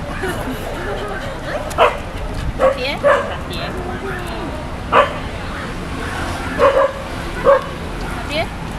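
Beagle giving short, sharp barks and yips, about six of them spaced irregularly a second or two apart.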